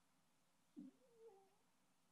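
Near silence: room tone, with a faint short wavering tone about a second in.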